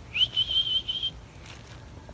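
A person whistling one note to call dogs: a quick upward slide into a held, slightly wavering high whistle lasting about a second.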